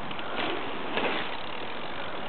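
Downhill mountain bike rolling fast over dirt up to a jump lip: a steady rushing noise with small swells about half a second and a second in.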